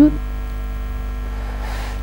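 Steady electrical mains hum: a low, even buzz with a stack of overtones, left bare in a gap between speech. A woman's word cuts off just at the start.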